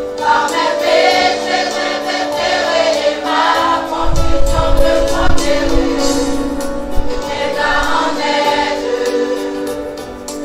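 Large mixed church choir singing a gospel hymn in long held chords, with a deep bass sound swelling in about four seconds in and fading out by about six seconds.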